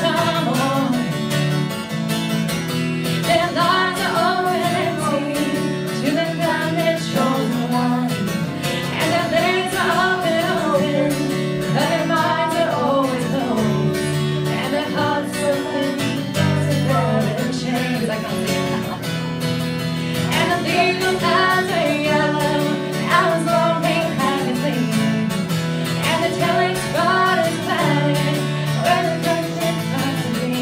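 A song performed by a singer with guitar accompaniment. The vocal line rises and falls over steady low notes and continuous strumming.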